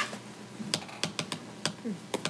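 Typing on a laptop keyboard: a handful of sharp, irregularly spaced keystroke clicks.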